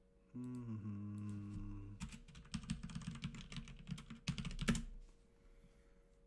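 A man hums briefly with his mouth closed. Then comes about three seconds of rapid, irregular clicking from typing on a computer keyboard, loudest just before it stops.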